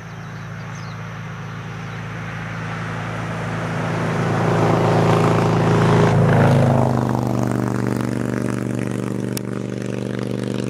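A motor vehicle's engine running, growing steadily louder for about six seconds, then running at a steady level.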